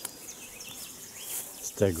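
Bees buzzing in numbers over a flowering meadow, busy collecting nectar. There are so many that it raises the question of a swarm, though the speaker thinks it is not one.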